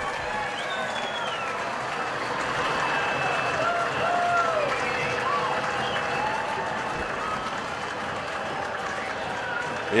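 Stadium crowd cheering and applauding: a steady wash of clapping with scattered shouts rising out of it.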